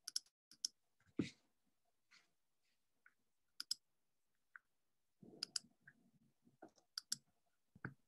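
Faint clicking of a computer mouse, scattered single clicks and quick double-clicks, with a brief low rustle about five seconds in.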